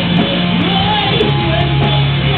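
Live rock band playing loud, heavy music: electric guitars and bass guitar over drums with regular sharp cymbal and drum hits.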